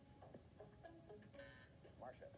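Faint game-show programme audio playing from a phone's speaker: scattered short tones, with a brief bright tone about one and a half seconds in.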